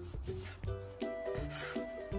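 Knife drawn through raw meat against a wooden cutting board, a rasping stroke through the second half, over background music with a melody of short notes.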